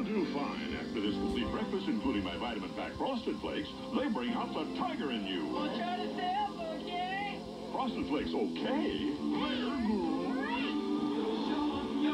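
Soundtrack of a TV commercial, music and voices, playing through a tablet's small speaker.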